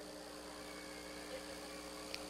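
Faint, steady electrical hum of a sound system, held on a few even tones with nothing else of note.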